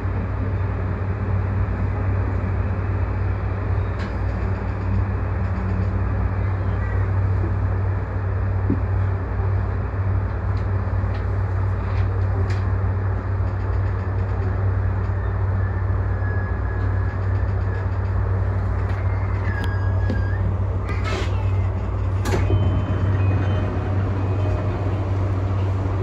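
E235-1000 series electric train running, heard from inside the leading car: a steady low hum of running noise with a few sharp clicks from the track. A thin high whine comes in past the middle and holds for a few seconds.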